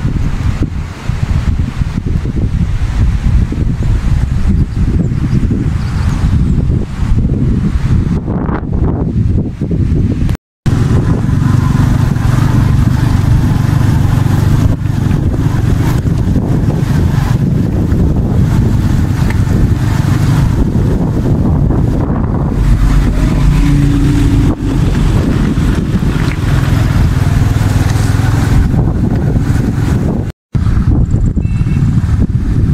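Vehicle driving along a rough unpaved road: a steady low engine and road rumble with noise above it. The sound drops out completely for a moment about ten seconds in.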